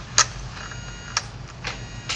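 A paper handout being handled and positioned on a document camera: a few sharp clicks and taps, with a faint thin whine in the middle.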